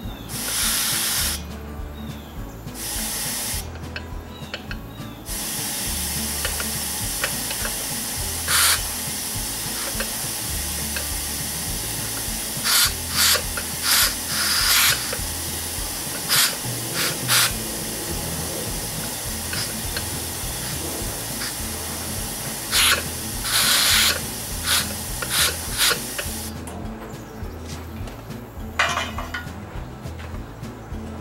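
Compressed air at about 30 psi hissing out through the pressure-release valve of an aluminium pressure-cooker lid while the valve is being tested. Two short hisses near the start, then a long steady hiss with repeated louder spurts, cutting back about three and a half seconds before the end.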